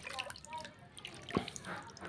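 Water splashing and dripping in a bucket as a seedling's roots are swished through it by hand to rinse off the soil, with one sharper splash about a second and a half in.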